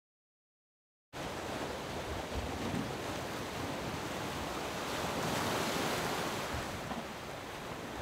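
Sea surf and wind, a steady rushing that swells a little midway, with wind buffeting the microphone. It starts abruptly about a second in, after silence.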